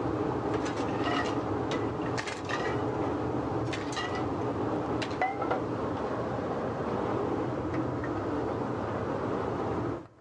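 Steady rushing background noise of a working restaurant kitchen stove, with scattered clinks and scrapes as a metal slotted spatula lifts steamed clams out of an aluminium sauté pan.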